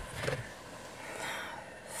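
Faint car-cabin room tone with a short breath near the start.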